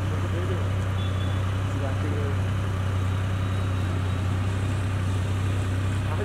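Motorcycle engine idling with a steady low drone.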